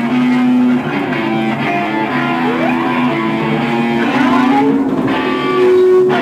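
Live noise-rock band playing, led by electric guitar, with sustained notes and several sliding pitches.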